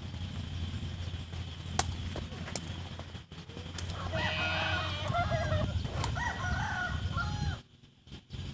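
Rooster crowing from about four seconds in, the calls running for about three seconds. Earlier there are a few sharp knocks of the sepak takraw ball being kicked, the loudest about two seconds in.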